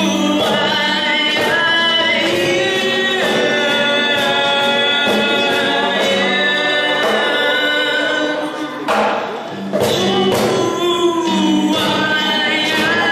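A live acoustic song: voices singing long held notes, likely in harmony, over acoustic guitar and Meinl cajon percussion. The singing breaks off briefly about nine seconds in, then resumes.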